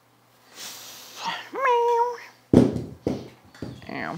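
A woman breathes out hard, then lets out a held, strained groan of effort at the end of a set of dumbbell raises. Three heavy thuds follow as the dumbbells are set down on the floor, the first the loudest.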